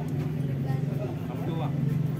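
Indistinct voices of people standing around, with a steady low hum underneath.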